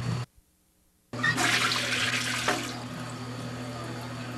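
After a brief drop to silence, a toilet flushes: a loud rush of water starts about a second in and tapers off after a couple of seconds.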